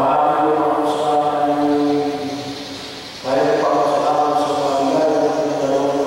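A priest chanting a liturgical prayer into a microphone, in two long phrases of near-steady held notes with a break of about a second between them.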